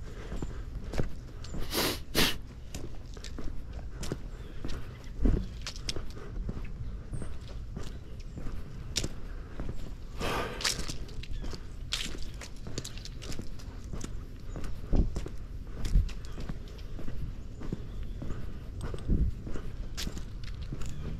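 Footsteps of a person walking along an outdoor trail, irregular steps throughout, with two louder rustles about two seconds in and again about ten seconds in.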